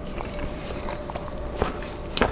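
A person chewing a Papa John's Papadia flatbread sandwich with the mouth closed, close to the microphone: a few soft, scattered mouth clicks over a faint steady hum.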